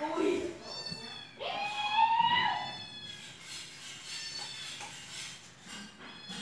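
A cat meowing twice: a short call about half a second in, then a longer, louder meow that rises in pitch, holds and falls away.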